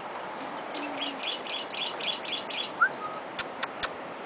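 A small bird chirping a quick run of about seven similar high notes, roughly four a second, then a short rising note, followed by a few sharp clicks near the end.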